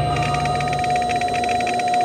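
Electronic transition sound effect: a steady beep tone with a fast, evenly pulsing digital chatter above it that stops near the end.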